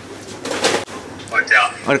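A person's voice: a short breathy sound about half a second in, then brief wordless vocal sounds, with a spoken word near the end.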